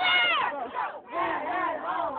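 Several kids shouting and yelling together: a long held yell that drops in pitch in the first half second, a brief break about a second in, then more shouts.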